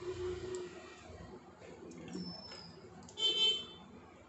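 Whole raw fish being shifted about in a steel bowl in a sink, with soft wet knocks in the first half-second. Near the end there is a louder, short, high-pitched horn-like tone lasting about half a second.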